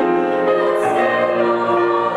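Choir singing a sustained, slow-moving passage with piano accompaniment.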